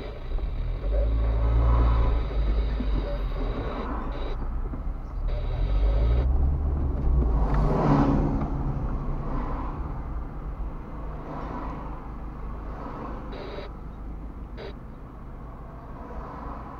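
Car driving in city traffic, heard from inside the cabin: a steady low engine and road rumble that swells twice, the second time peaking as a trolleybus passes close alongside about eight seconds in.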